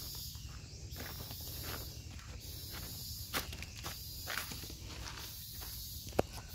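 Footsteps on dry ground, irregular and unhurried, with a steady high insect drone in the background.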